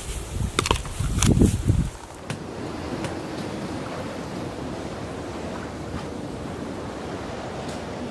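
Steady wind and lapping water noise from about two seconds in. Before that, a low rumble of wind on the microphone with a few sharp clicks.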